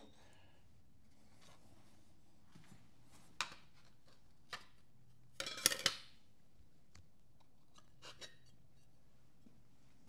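Quiet handling sounds of metal parts: a few isolated clicks and knocks, a short clatter of several clicks about five and a half seconds in, and two light ticks near the end.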